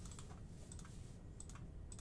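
Faint computer keyboard keystrokes, a few separate clicks spread over two seconds.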